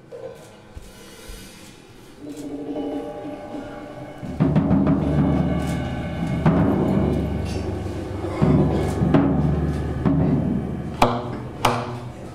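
Tenor saxophone and drum kit playing together as a duo. The music starts quietly, with held saxophone notes about two seconds in. Rolling drums come in loudly about four seconds in, and two sharp drum hits sound near the end.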